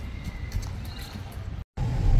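Footsteps on a paved sidewalk, a series of light, uneven knocks over low outdoor rumble. Near the end the sound cuts off abruptly for a moment, then a car's low rumble comes in.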